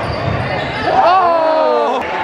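Crowd noise in a gymnasium during a basketball game, then about a second in a single voice shouting a long call that falls slightly in pitch.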